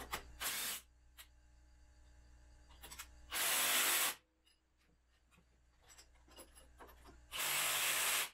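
Cordless power driver run in short bursts to drive a bolt on a tractor's three-point hitch: a brief burst at the start, then two louder bursts of under a second, a few seconds apart, with light clicks of tools and metal handling between.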